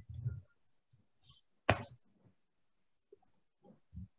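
Quiet video-call audio with a short spoken "uh" about two seconds in, faint murmuring and a few faint clicks.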